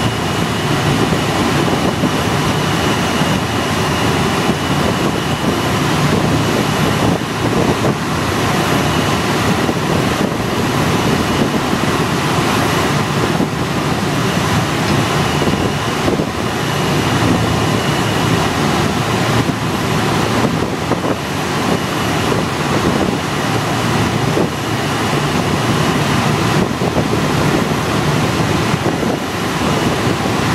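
Steady loud rush of air streaming past a glider's cockpit in flight, with a faint high whistle that comes and goes.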